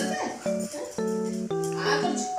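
Small white Spitz dog making short whining vocal sounds, a bend in pitch just after the start and another near the end, over background music with steady held notes.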